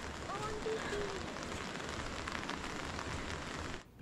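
Steady rain falling, an even hiss, with a faint voice about half a second in. The sound cuts off suddenly just before the end.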